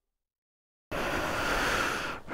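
Silence for about the first second, then a sudden cut-in of steady wind noise rushing over the microphone.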